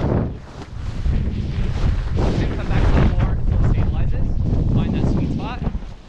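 Wind rushing over the camera microphone of a paraglider in flight, loud and gusting unevenly as the wing is deliberately stalled and spun.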